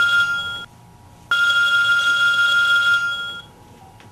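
A phone ringing with a steady high-pitched electronic ring: the end of one ring, then a second ring starting just over a second in and lasting about two seconds.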